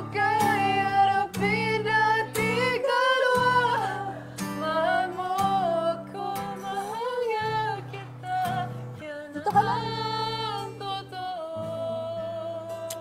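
Acoustic guitar strummed in steady chords, with a voice singing a melody over it.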